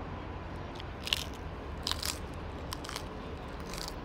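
Someone biting and chewing crisp fried food with the mouth close to the microphone: a handful of sharp crunches, the loudest about a second in and around two seconds, over a steady low background hum.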